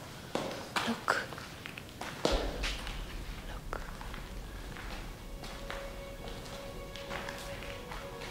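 Scattered footsteps and taps on a cave floor. A low hum enters after about two seconds, and soft background music with steady held tones fades in about five seconds in.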